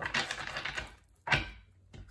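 A deck of tarot cards being shuffled by hand, giving a rapid patter of card edges. It comes in two bursts: one lasting most of the first second and a shorter one about a second and a half in. The shuffle is to draw a clarifying card.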